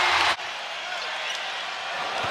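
Arena crowd cheering a made three-pointer, cut off abruptly by an edit about a third of a second in. Quieter steady arena crowd noise follows, with a basketball being dribbled on the hardwood court.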